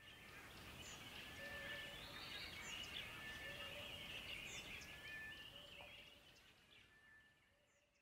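Faint outdoor birdsong: many small chirps with short whistled notes repeating every second or two. It fades in at the start and dies away about six seconds in.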